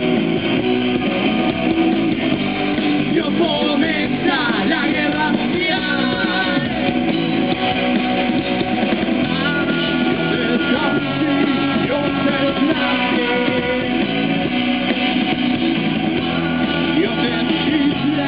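A rock band playing live, with electric guitars and a singer, loud and steady throughout.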